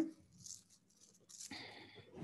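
Faint rattle and rustle of a mala bead necklace being handled and lifted over the head, the beads clicking against one another, mostly in the second second.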